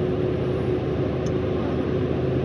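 Car driving at highway speed, heard from inside the cabin: a steady mix of engine hum and tyre and road noise, with no change in pitch or level.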